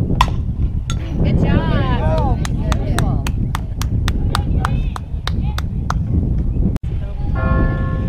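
A softball bat strikes the ball with a single sharp crack. Players' voices then yell and cheer over quick, steady rhythmic clapping that lasts a few seconds, and a chant-like call follows near the end. Wind rumbles on the microphone throughout.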